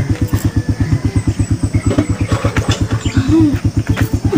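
A small engine idling with an even, rapid putt-putt of about nine beats a second. A short voice sound rises above it about three seconds in.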